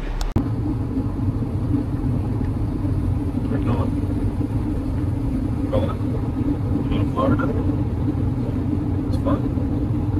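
Steady low rumble of a car driving, heard from inside the cabin.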